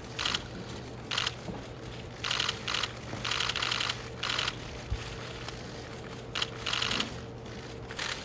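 Press photographers' camera shutters firing in rapid bursts: about nine short volleys of fast clicks, each a fraction of a second long, at irregular intervals, over a steady low hum.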